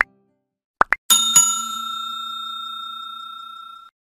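Two quick pops, then a small bell struck twice and left ringing for over two seconds before it stops abruptly: the click-and-bell sound effects of a like-and-subscribe button animation.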